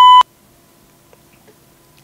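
A short, loud, high-pitched electronic beep on a telephone line, cutting off about a quarter of a second in, followed by a faint steady line hum.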